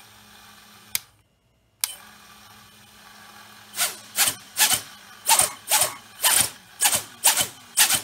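The BetaFPV Pavo 25 V2's brushless motors with ducted props hum at armed idle on the bench. From about halfway through they give about ten short, quick revs, roughly two a second, each winding down in pitch, as the sticks are worked to check the motors respond.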